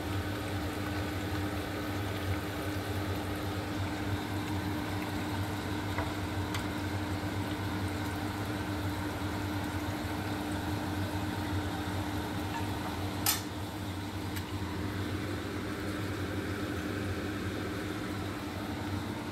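Oil sizzling steadily in a frying pan as masala-coated sea bream fries on a gas hob, over a steady low hum. One sharp click a little past the middle.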